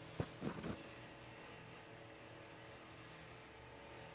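Faint steady hum and hiss in a quiet room, with a sharp click about a quarter second in, followed by two or three brief soft sounds before the first second is out.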